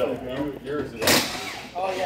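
People talking indistinctly, with a short burst of hiss about a second in.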